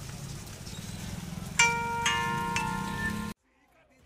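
Street and crowd noise, then a loud cluster of steady tones at several pitches starting about one and a half seconds in, with more tones joining half a second later. It stops abruptly near the end.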